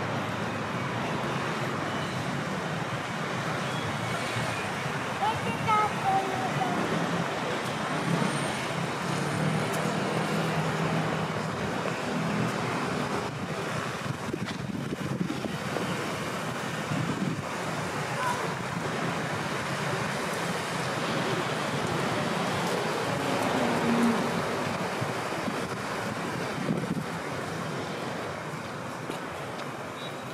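Urban street ambience: steady traffic noise from the surrounding streets, with faint, indistinct voices of people passing by.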